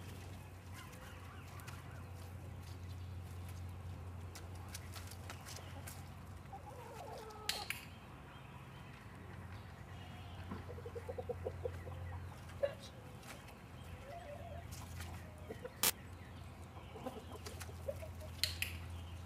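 Domestic chickens clucking at intervals, with two sharp clicks, one a little before halfway and one near the end.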